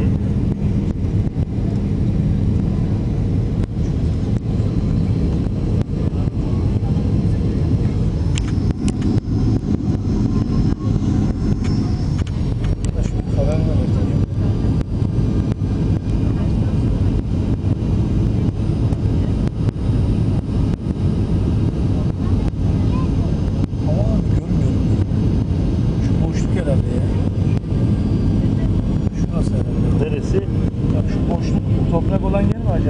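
Steady jet airliner cabin noise during the descent to land: a loud, even drone of engines and airflow with a low steady hum.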